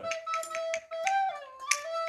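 A recorder sounding one held note, stepping briefly higher and then lower before returning to it, with a few sharp taps over it.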